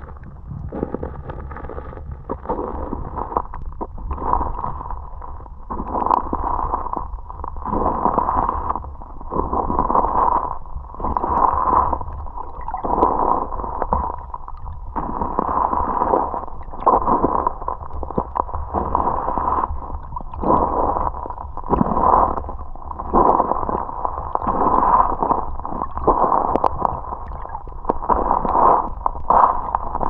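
Muffled water sloshing and rumbling heard through a camera held underwater, in surges that come about every one and a half to two seconds as the camera is moved through the river.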